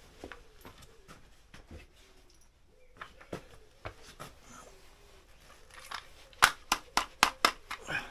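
Hand tools being handled: scattered faint knocks and clicks, then a quick run of about six sharp metallic clicks near the end.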